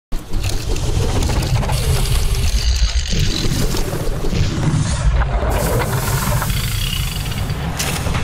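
Cinematic sound effects for an animated logo intro: a heavy low rumble that starts abruptly and runs on loudly, with rushing whooshes of noise layered over it.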